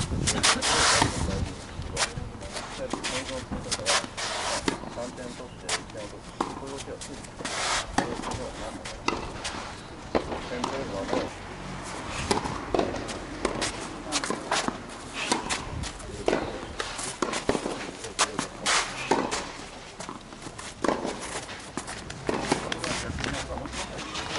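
Tennis play: sharp pops of a tennis ball struck by rackets and bouncing on the court, with footsteps and voices around the court.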